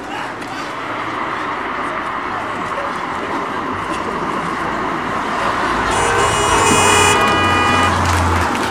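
A steady, noisy wash grows louder, then a vehicle horn sounds, held for about two seconds near the end.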